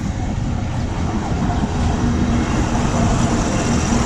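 Pakistan Railways GEU-40 diesel-electric locomotive running past close by as the train comes in to stop, followed by its passenger coaches rolling over the rails: a steady, heavy rumble. A steady low tone joins about a second and a half in.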